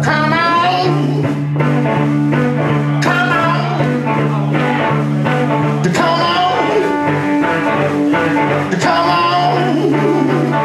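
Live blues trio playing: guitar over a drum kit and upright double bass, with the bass notes and drum beat running steadily.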